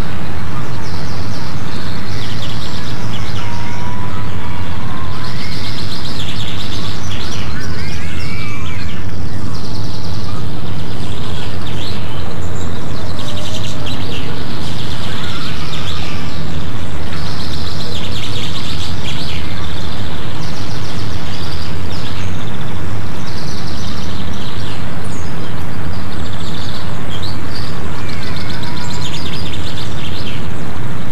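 Birds chirping and calling, with short rising and falling chirps scattered through, over a loud, steady hiss-like noise.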